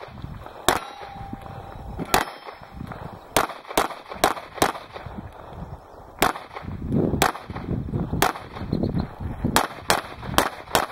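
Handgun shots fired in an uneven string, about a dozen in all, some as quick pairs about a third of a second apart and others a second or more apart.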